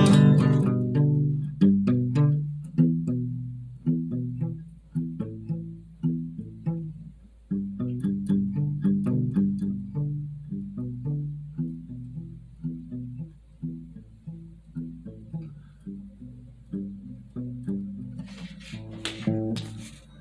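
Instrumental outro: plucked guitar notes in a low register, a few a second, each note dying away, the whole slowly fading, with a short brighter patch of sound near the end.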